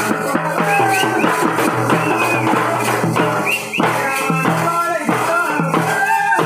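Live folk band music: a double-headed drum beaten in a fast, steady rhythm with shakers and small hand cymbals, under a melody and a steady low drone.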